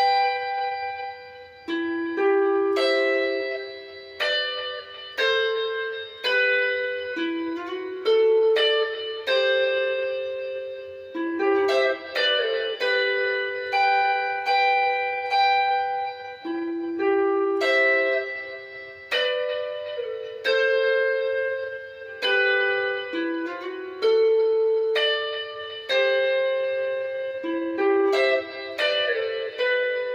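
Clean-toned electric guitar, a Fender Telecaster-style, playing a slow seben (soukous) lead melody in G, note by note. Single plucked notes and pairs of notes ring and fade in short phrases with brief pauses.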